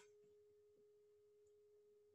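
Near silence, with only a faint steady tone held level throughout.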